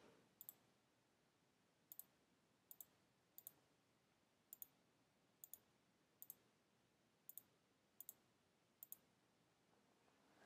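Faint computer mouse clicks: about ten pairs of quick clicks, spaced roughly a second apart, over near silence.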